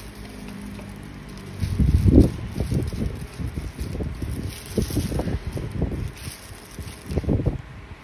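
Irregular low rumbles and bumps of noise on the phone's microphone, starting about one and a half seconds in and loudest soon after.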